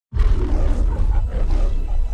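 A lion's roar from the Metro-Goldwyn-Mayer studio logo, starting suddenly and carried on a deep low rumble.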